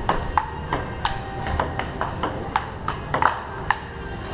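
Fast table tennis rally: the ball clicks back and forth off the paddles and the Kettler table, about three hits a second. Some bounces carry a short ringing tone.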